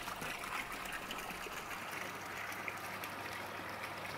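Water pouring from a PVC pump discharge pipe and splashing into a tank: a steady, even rush of water, with a faint low hum underneath.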